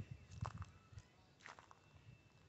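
A few faint footsteps, about three, roughly half a second apart, over near-silent outdoor quiet.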